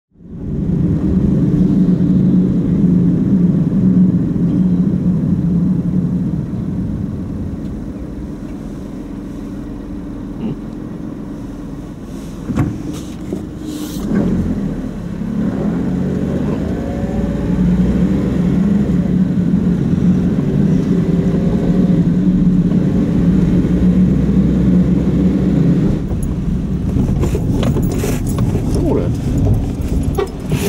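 Car driving along, heard from inside the cabin: a steady low engine and road drone that eases off for a few seconds near the middle and then picks up again, with a few sharp clicks just before it rises.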